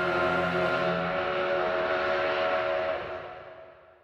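Steam locomotive whistle blowing one long, steady chord with a breathy hiss, fading out over the last second.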